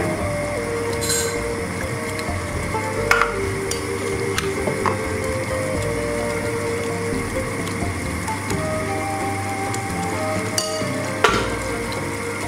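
Tomato sauce simmering in a pot with a steady sizzle, under soft background music with long held notes. A few sharp clicks, the loudest near the end.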